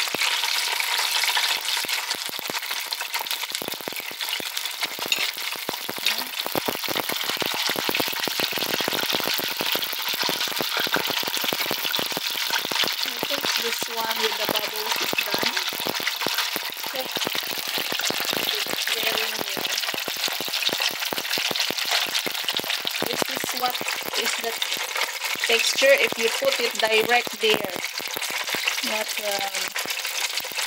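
Spring rolls frying in hot oil in a pan and a pot: a steady, dense crackling sizzle as the oil bubbles around the rolls.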